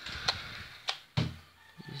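Light clicks and knocks from a handheld camera and toy controller being handled, with a brief low voiced sound a little over a second in.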